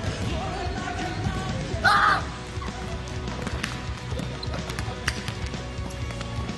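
A basketball bouncing and thudding in a gym, with a brief loud burst about two seconds in, over background music.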